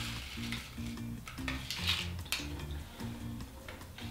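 Medicine granules pouring from a paper sachet into a glass mug of hot water and being stirred, heard as a few short rustling hisses and scrapes. Background music with a steady beat plays underneath.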